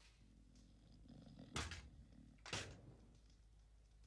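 Two sharp knocks about a second apart over a faint low hum: flintlock pistols dropped onto the floor.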